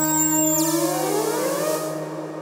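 Novation MiniNova synthesizer playing a sustained pad: two steady low held notes under high tones that glide and sweep. About half a second in the upper sound changes to rising glides over a hiss-like wash, and the sound starts to fade near the end.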